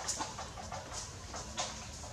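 Animal calls: a few short, high-pitched chirps spread through the couple of seconds, over a steady background hiss.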